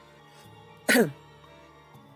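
A woman clears her throat once, briefly, about a second in, over faint background music.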